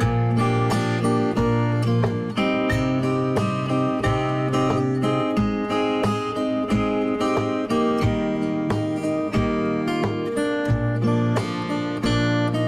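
Background music led by acoustic guitar, a steady run of plucked notes.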